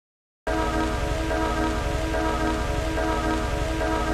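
Dead silence, then about half a second in a droning chord of several held tones cuts in suddenly over a rain-like hiss and a low hum, and runs on steadily.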